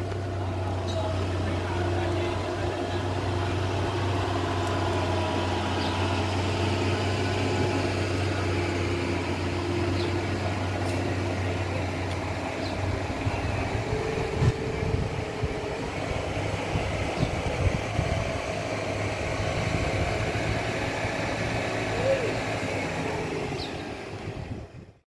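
Street ambience: a steady low hum that drops away about halfway, with faint voices in the background.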